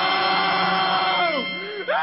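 A cartoon man's long scream held on one steady pitch. Near the end it breaks into short rising-and-falling yelps.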